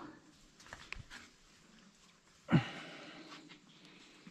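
A person's short, loud breathy exhale, like a sigh, about two and a half seconds in, with a few faint clicks earlier.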